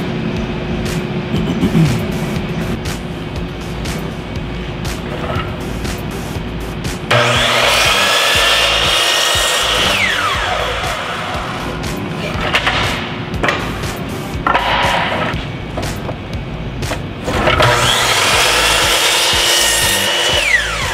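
A DeWalt miter saw crosscutting a pine board. The motor starts with a whine about seven seconds in, the blade cuts through the wood, and the whine falls away as the blade coasts down. A second cut starts about seventeen seconds in and ends the same way. Background music plays throughout.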